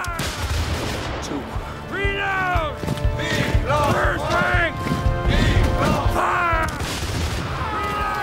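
Battle soundtrack: flintlock musket fire near the start, then many men shouting and screaming in falling cries over a low rumble of battle noise. Background music sits underneath.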